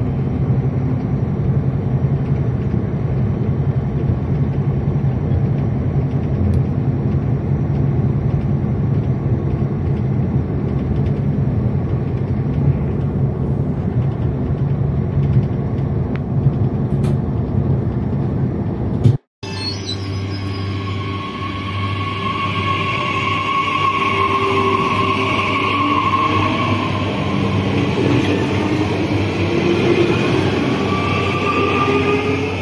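Steady rumble of a train running, heard from inside the carriage. After a sudden cut about two-thirds in, an SNCF TER electric train runs close past a station platform, with a steady whine from its motors and wheels over the rumble, rising in pitch near the end.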